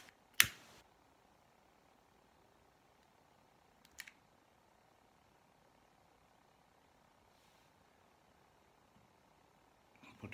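Small glass pieces being handled during gluing: one sharp click about half a second in and two faint clicks about four seconds in, otherwise near silence.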